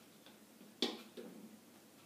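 A chess piece set down on a wall-mounted demonstration board: one sharp click a little under a second in, followed by a fainter, lower knock.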